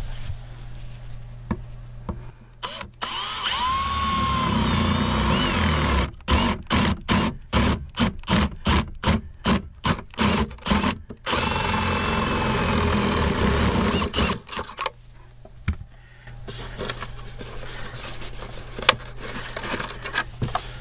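Cordless drill boring a hole into a truck camper's wall panel: the motor spins up with a rising whine and runs steadily, then the trigger is pulsed in quick bursts, about two or three a second, for several seconds, before it runs steadily again and stops.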